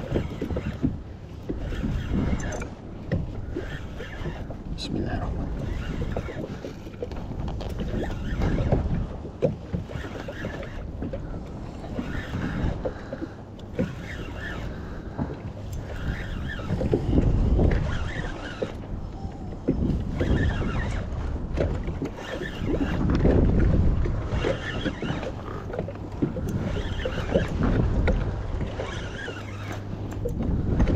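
Wind buffeting the microphone and choppy sea water slapping against a kayak hull, an irregular low rumble that swells and falls.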